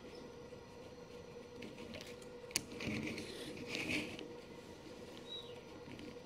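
Quiet room tone with a faint steady hum, broken by soft handling sounds of fingers on a small plastic action figure: one sharp click about two and a half seconds in and light rustling around the third and fourth seconds.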